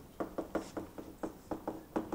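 Rapid light tapping, about five taps a second, from a stylus on a tablet screen as an equation is written out.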